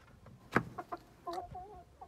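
A sharp knock about half a second in, followed by a few small clicks, then a short wavering cluck from an Aseel chicken near the end.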